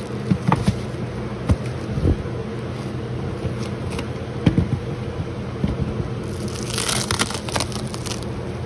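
Hive handling over a steady low hum: a few sharp knocks in the first half, then a crinkling, scraping rustle for about a second and a half near the end as the hive is opened onto frames of bees.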